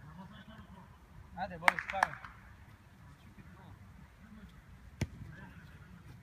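Futsal ball being kicked on artificial turf: two sharp thumps in quick succession about two seconds in, and another near the end, over a short shout from a player.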